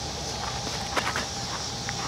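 A few short knocks about a second in, over a steady high-pitched background hiss.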